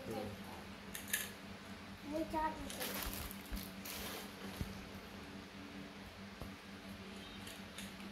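A person's voice saying a few words, twice briefly, with a few short sharp clicks in between and a steady low hum underneath.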